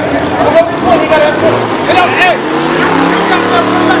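A drag-race car's engine running at the track, its pitch climbing slowly from about two seconds in, under men's voices.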